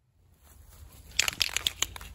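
Aerosol spray paint can (Rust-Oleum 2X Ultra Cover gloss white) in use: a quick run of sharp rattling clicks and short hisses about a second in, over a low rumble.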